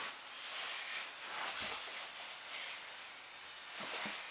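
Quiet room hiss with faint rustling of clothing as a kneeling boy shifts a little across the carpet.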